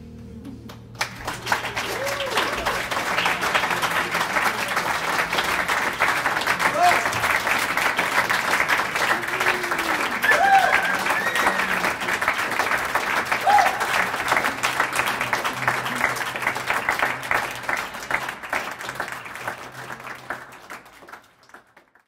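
A held note dies away, then about a second in a club audience breaks into applause with a few cheers. The applause fades out near the end.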